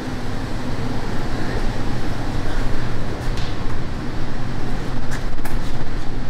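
Steady rumbling background noise with a low hum, like a shop fan or ventilation unit, with a few light clicks about three and five seconds in.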